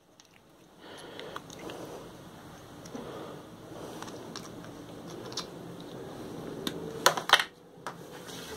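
Light handling of combination pliers on a thin wire: scattered faint clicks and rustles, with a few sharper clicks about seven seconds in.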